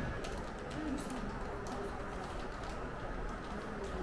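Shop background noise: a steady hum of room noise with faint, indistinct voices and a few light clicks.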